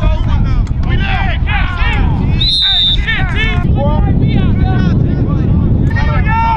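Several voices calling and talking at once over wind rumbling on the microphone, with a short, steady whistle blast about two and a half seconds in.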